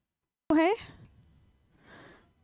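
Half a second of dead silence, then a woman's brief vocal sound rising in pitch, fading quickly, followed near the end by a soft breath.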